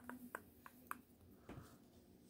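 Faint clicks and taps of small plastic toy figures being handled and set down on a tabletop, with a soft thump about one and a half seconds in.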